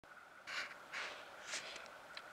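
Faint breathing: three soft breaths or sniffs about half a second apart.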